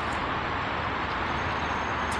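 Steady city traffic noise, an even rumble with no distinct events.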